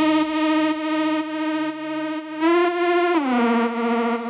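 Melodic techno DJ mix in a breakdown with no kick drum: a sustained, distorted lead holds a note. It steps up in pitch about two and a half seconds in, then glides back down under a second later.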